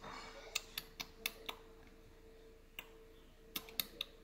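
Small plastic toy pieces clicking and tapping lightly as a hand handles them: a quick run of about five clicks in the first second and a half, then a few more near the end.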